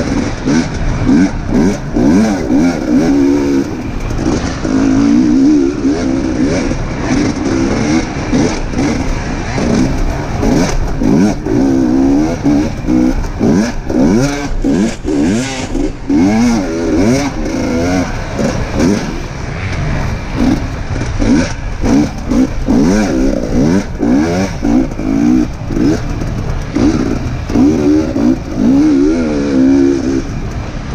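Enduro dirt bike engine heard from on board, revving up and down over and over as the bike is ridden along a rutted, muddy forest trail. Short knocks and rattles are heard now and then, most of all around the middle.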